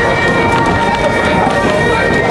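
Steady running noise of a moving narrow-gauge railway passenger coach: wheels on the rails and the car rumbling along, with a steady high-pitched tone running through it and passengers' voices mixed in.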